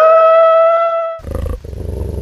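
Wolf howl sound effect: one long call that rises in pitch and then holds steady, breaking off about a second in. It is followed by a low, rumbling growl.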